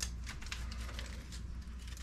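Thin plastic keyboard membrane (mylar) sheets crinkling and crackling in the hands as they are worked at to peel the layers apart: a quick, irregular run of small crackles over a low steady hum.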